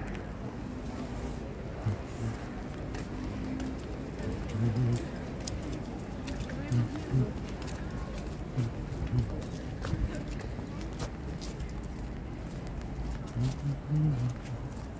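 Outdoor ambience while walking: a steady low rumble of wind on the microphone, with short bursts of indistinct voices and scattered light clicks and taps.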